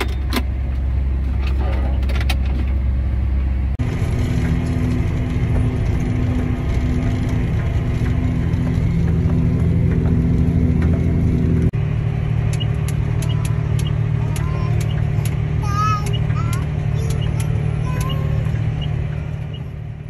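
Farm tractor engine droning steadily, heard from inside the cab while towing a grain cart. The sound changes abruptly about 4 and 12 seconds in, and scattered clicks come in the last part.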